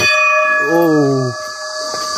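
A metal temple bell struck once, ringing on in several clear tones that fade slowly, the higher ones first.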